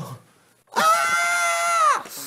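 A high-pitched voice holding a shrill, scream-like note for about a second. It comes in after a short pause and falls in pitch as it cuts off.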